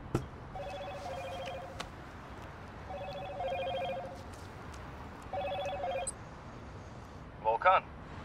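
A mobile phone ringing: three warbling electronic rings, each about a second long, roughly two and a half seconds apart. A short sharp click comes just at the start.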